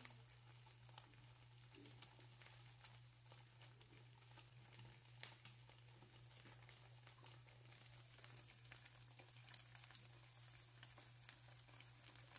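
Faint crackle of eggs and sausages frying in oil in a pan, with scattered small pops, over a steady low hum.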